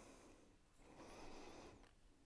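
Near silence: workshop room tone, with a faint soft noise for about a second near the middle.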